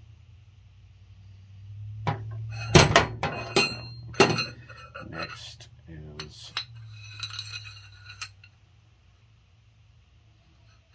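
Steel rocker arms and a rocker shaft from a Mopar 360 being handled on a metal workbench: a run of sharp metal clinks and knocks over about six seconds, starting about two seconds in. A steady low hum runs underneath.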